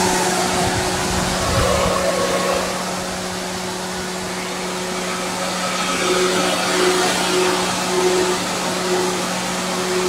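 AVS aftermarket 10-blade high-speed electric fan, rated at 12,000 rpm, running on a Perodua Myvi's air-conditioning condenser: a loud, steady rush of air with a steady low hum under it.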